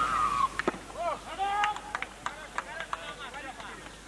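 Voices calling out. The loudest is a high-pitched call falling in pitch at the very start, followed by several shorter calls rising and falling about a second in, with a few sharp clicks scattered among them.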